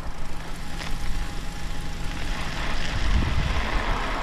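Riding noise of a fat-tyre e-bike on an icy, snow-covered road: a steady low rumble of wind on the microphone and tyres on the ice, with a faint steady motor whine that fades out about three seconds in.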